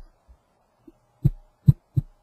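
Computer mouse clicking three times: short, dull thumps in the second half, about half a second apart, with quiet between them.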